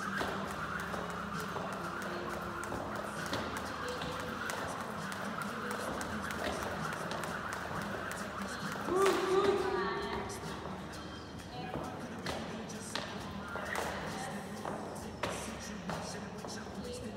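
Voices in a large gym hall, with one loud call about nine seconds in, over scattered light thuds and shuffling from burpees on rubber flooring.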